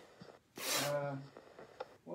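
A man's short, indistinct spoken reply: a hissing consonant followed by a brief low-pitched voiced stretch, faint and away from the microphone. A small click comes near the end.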